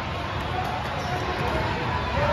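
Indoor basketball game: a ball dribbling on a hardwood court with sneakers squeaking, over background chatter in a large, reverberant hall.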